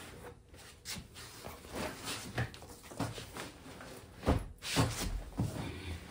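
Items being handled and set down on a folding table: a string of irregular knocks and thuds, the loudest two coming a little after four seconds and near five seconds in.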